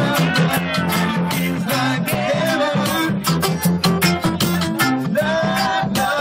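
Live acoustic reggae: a man sings into a microphone over an acoustic guitar strummed in a steady, even rhythm, with a woman singing along.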